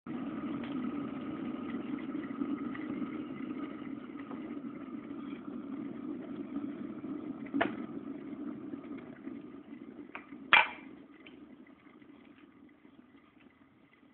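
Electric kettle heating with a steady rumbling hiss, which dies away over a second or two after a sharp click about ten and a half seconds in. There is a lighter click a few seconds earlier.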